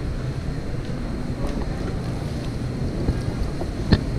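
Steady low rumble of wind buffeting the camera microphone over background noise, with a single short knock near the end.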